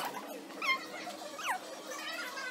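Two short, high squeaks about a second apart, the second sliding sharply down in pitch.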